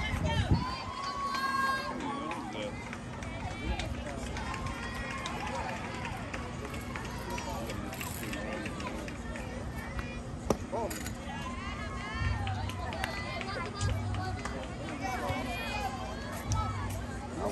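Indistinct chatter of spectators' voices with no clear words, over a faint steady hum, broken by a few short sharp knocks, the clearest about ten seconds in.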